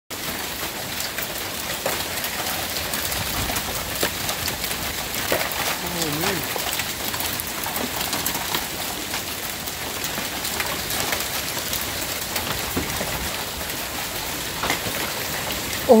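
Heavy rain mixed with hail falling steadily, with many sharp ticks of hailstones striking the porch, cars and ground.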